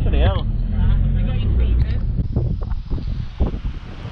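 A brief voice at the start over a strong low rumble. About two seconds in, the rumble gives way to wind noise on the microphone with a few short knocks.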